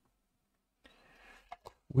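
Near silence, then about a second in a faint brief rustle and two light clicks as a small plastic water bottle is handled and set down after filling a plastic wet-palette tray.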